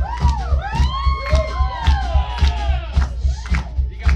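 Live rockabilly band playing with a fast, steady drum beat. In the first three seconds, high wailing tones slide up and down over the band.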